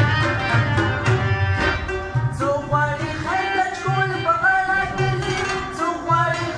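Harmonium playing a Pashto folk melody in sustained reedy chords, with low hand-drum strokes keeping a steady beat.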